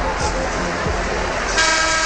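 Arena crowd noise, then about one and a half seconds in a loud, steady horn-like tone starts and holds over it.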